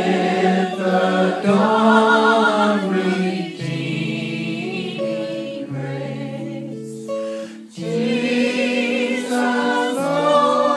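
A man singing with vibrato while strumming an acoustic guitar, in phrases with short breaths between them.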